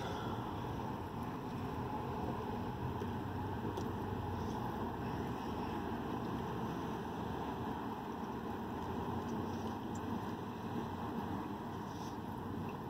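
Steady low vehicle rumble with a soft hiss, heard inside a pickup truck's cab.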